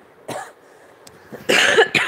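A person coughing: a short cough about a third of a second in, then a louder cough near the end.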